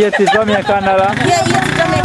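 Several voices calling out a short repeated phrase in a loud, overlapping chant. A low steady hum sets in underneath about one and a half seconds in.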